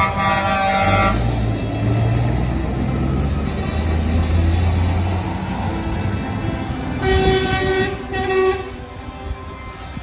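Truck air horns blasting, once at the start and then twice more about seven and eight seconds in, over the low running of heavy truck diesel engines pulling away.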